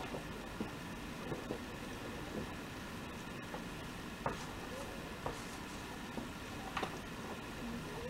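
A hand working soft yeast dough for kulich in a large bowl: scattered soft squelches and light taps over a steady background hum.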